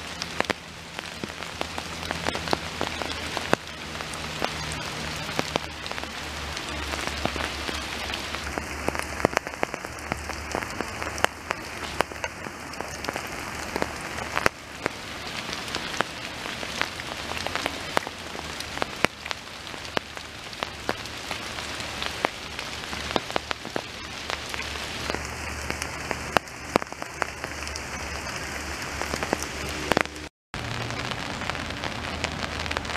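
Steady rain falling, a continuous hiss with many separate drops ticking close by.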